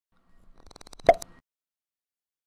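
Animated logo sound effect: a quick run of rapid clicks that ends in a sharp pop with a brief ring about a second in, then cuts off.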